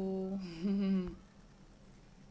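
A woman humming two short held notes, stopping about a second in.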